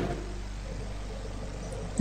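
Steady low electrical hum with a faint hiss, the background noise of the audio line, with no speech.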